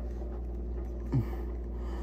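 Steady low room hum, with one short falling grunt from a man's voice about a second in as he packs a pinch of dip into his lip.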